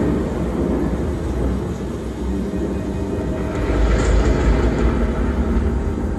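Deep, low rumble from a projection show's loudspeaker soundtrack, swelling about three and a half seconds in, with a brief hiss near the loudest point.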